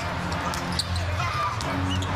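A basketball being dribbled on a hardwood arena court: several sharp bounces over a steady low arena hum.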